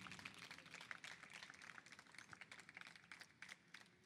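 Faint audience applause, with separate hand claps audible, dying away steadily as it is faded down.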